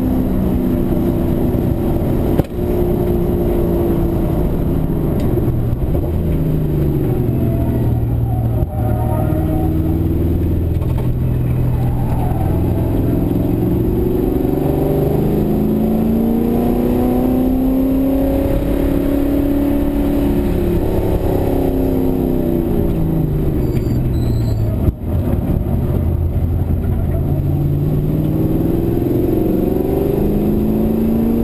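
Race car's V8 engine heard from inside the cabin during a hot lap at speed, its pitch rising under acceleration and falling off under braking in long sweeps. There are three brief dips in level.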